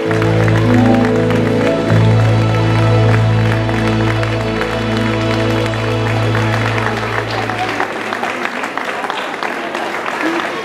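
A live band's closing chord, held with a deep bass note and ringing until it stops about eight seconds in, under audience applause.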